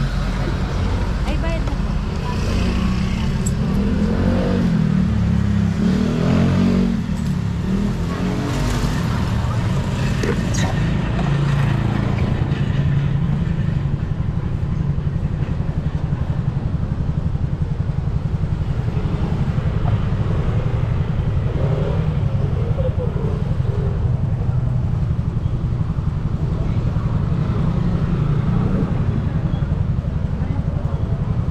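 Motorcycle engine idling steadily with the bike stopped. Voices talk briefly a few seconds in and again past the middle.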